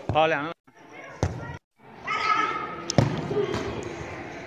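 A futsal ball struck twice on the turf court, sharp smacks about a second in and about three seconds in, among the voices of players.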